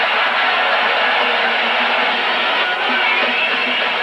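Ballpark crowd cheering loudly and steadily after a game-tying two-run home run, with music mixed in.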